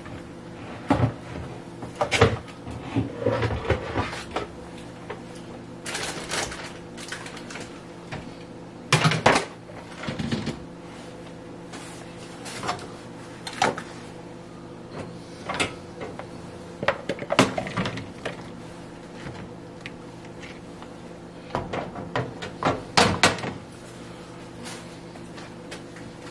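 Kitchen handling sounds: irregular knocks, clacks and scrapes as a knife and a plastic bowl are moved about and sliced leeks are scraped off a plastic cutting board into the bowl, over a steady low hum. The loudest clatters come about nine seconds in and again near the end.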